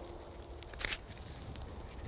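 Faint handling sounds of a black plastic plant pot being held upside down while its root ball slides out, with one brief scrape about a second in.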